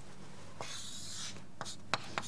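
Pen writing on paper: a scratchy stroke about half a second in, then a few short taps of the pen.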